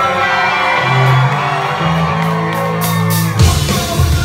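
Live punk rock band playing loud, with distorted guitars and bass holding long low notes. About three and a half seconds in, the full band with drums crashes back in.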